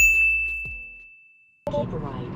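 A single bright bell-like ding at one high pitch, the kind of sound effect added with a subscribe-button pop-up, struck once and ringing away to nothing over about a second and a half.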